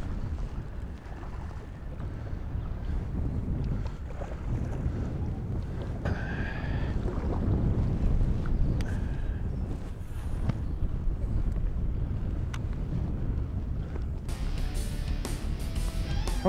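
Wind buffeting the microphone over a steady low rumble of water against the boat on open water. Guitar music comes in near the end.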